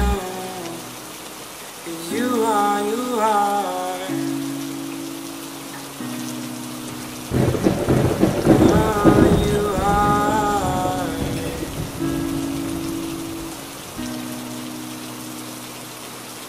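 Rain falling steadily, with a loud rumble of thunder about seven seconds in, mixed over the soft held synth chords and wordless vocal notes of a slow song whose beat has dropped out.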